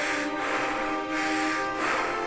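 Heavy breathing through a respirator mask, hissing in and out in repeated swells about every half second to a second, over sustained background music.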